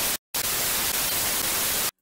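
TV static sound effect: a loud burst of even white-noise hiss with a brief dropout a fraction of a second in, cutting off abruptly near the end.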